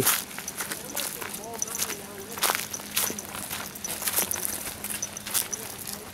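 Footsteps of several hikers on a dirt trail scattered with dry fallen leaves, crunching at an irregular walking pace.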